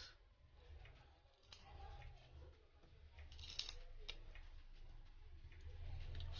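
Near silence, with a few faint clicks and scrapes of a small metal tool working at the edge of a smartphone's glued battery.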